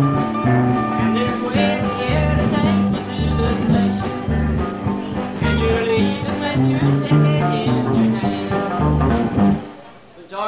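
Live country band playing an instrumental break, a twangy electric guitar lead over bass notes. The band drops out sharply just before the end.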